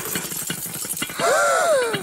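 Cartoon shaking sound effect: a fast, continuous rattle as a ladybird with swallowed car keys inside is shaken upside down. In the second half a wavering cry rises and then falls.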